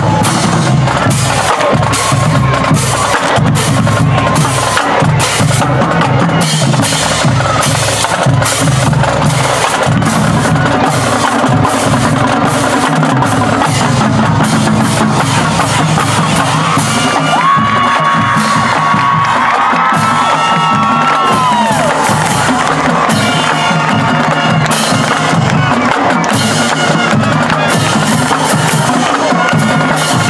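Marching band drumline playing: rapid snare and tenor drum strokes over bass drum hits, loud and steady. A few held notes from the band join for several seconds a little past halfway through.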